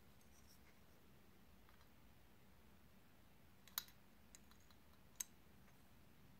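Near silence with a few light clicks as metal titanium-axle bicycle pedals are handled: the most distinct comes a little before 4 seconds in and another about a second later.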